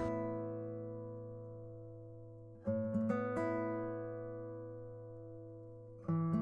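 Background music: acoustic guitar chords ringing out and slowly fading, with fresh strums about two and a half and three seconds in.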